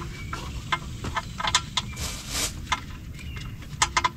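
Scattered light clicks and taps as the oil drain plug is handled and threaded back into the oil pan, over a low steady outdoor background.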